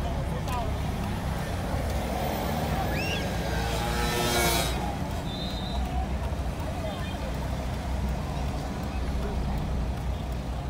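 Steady low rumble of a car's engine and road noise heard from inside the cabin while driving slowly, with indistinct voices of people outside. A brief louder sound rises over it about four seconds in.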